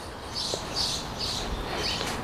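A songbird chirping: a series of short, high notes repeated several times over a steady low outdoor background noise.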